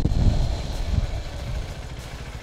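KTM RC 390's single-cylinder engine on a closed throttle as the bike brakes hard into a stoppie: a low, uneven rumble that eases off after about a second.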